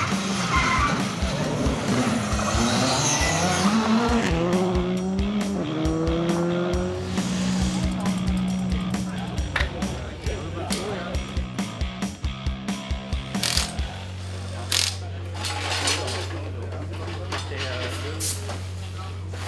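Škoda Fabia R5 rally car passing under power, its engine note climbing in several rising sweeps as it accelerates through the gears, fading after about eight seconds. A steady low hum sets in from about three quarters of the way through.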